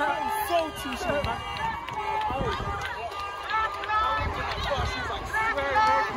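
Crowd of protesters on the march: many voices talking and shouting over one another, with a low rumble on the phone's microphone in the middle and louder shouts near the end.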